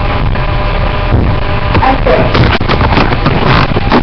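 Loud, distorted knocks and thumps over a rough rustling noise, with brief snatches of a girl's voice about two seconds in.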